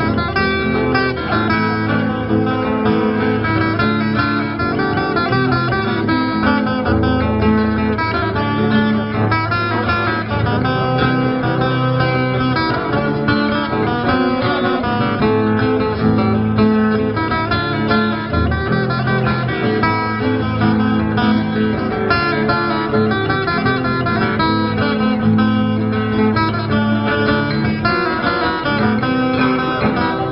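Acoustic guitars played together live through PA loudspeakers, strummed and picked in a steady, unbroken instrumental passage.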